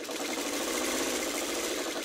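Sewing machine running steadily, stitching a seam through cotton patchwork pieces for a quilt block.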